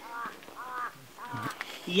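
A crow cawing three times, each caw a short call that rises and falls.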